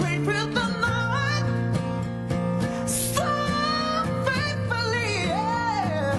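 A male singer's voice slides and bends through the melody over acoustic guitar accompaniment, in a stripped-back acoustic cover song.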